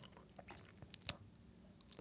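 A few faint, short clicks and ticks scattered through a quiet pause, over low room tone.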